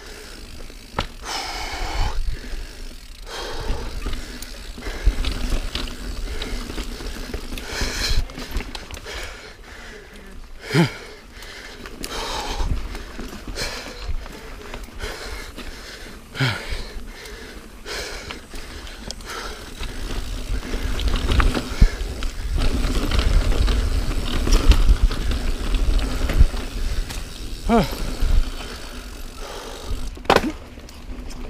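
Niner Jet 9 RDO full-suspension mountain bike ridden over a dirt singletrack, with tyre rumble, wind on the microphone and scattered knocks and rattles from the bike over bumps. The rumble grows louder about two-thirds of the way through.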